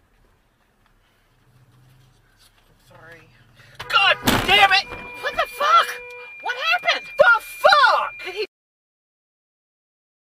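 A car bumping into the back of a pickup truck: one sudden impact about four seconds in, followed by a person shouting, with a steady tone under the voice. The sound cuts off suddenly about a second and a half before the end.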